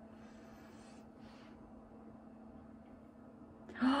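Quiet room tone with a faint steady hum and two soft breathy rustles, then a woman gasping and starting to exclaim "oh" near the end.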